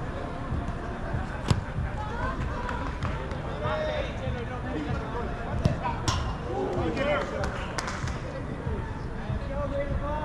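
A soccer ball being kicked during play, a few sharp thuds spread across the stretch, the loudest about a second and a half in. Players' voices call out faintly in the background.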